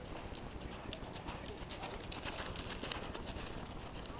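A horse cantering on a sand arena: repeated hoofbeats.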